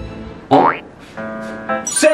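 Cute background music with a cartoon sound effect: a quick upward-sliding boing about half a second in, followed by held music notes.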